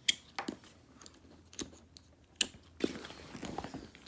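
Gymshark Life Backpack being opened: its plastic strap buckles are unclipped and the straps pulled loose, several sharp clicks among the rustle of the bag's material being handled.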